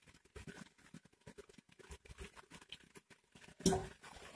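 Cooking oil poured from a steel jug into a pressure cooker of cooked minced beef, with faint irregular crackling and ticking. Near the end, one louder knock as the jug is set down.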